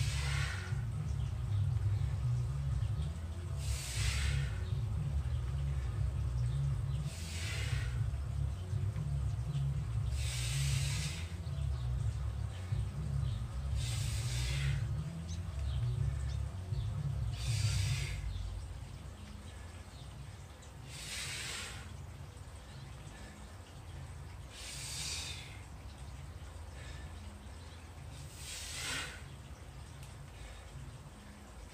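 A man breathing out forcefully and steadily in time with clubbell squat reps, a hissing exhale about every three and a half seconds, nine in all. A low rumble runs underneath and fades out a little past halfway.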